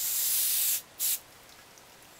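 Can of compressed air sprayed through its thin straw nozzle. It gives a steady hiss that cuts off just under a second in, then one short second burst.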